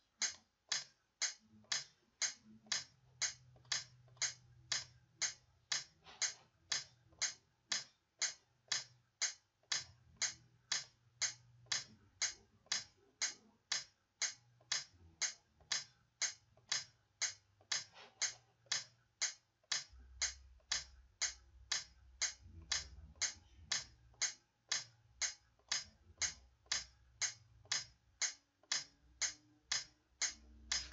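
Metronome clicking steadily, about two clicks a second.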